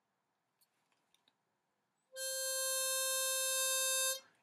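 Harmonica playing a single soft, steady held note that starts about halfway through, breathed gently to show the light air a harmonica needs.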